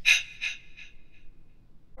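A man's quick, breathy gasps, several in rapid succession and fading out within the first second.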